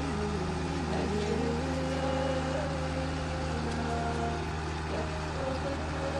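A vineyard machine's engine running at a steady drone, with a pitched sound wavering up and down over it.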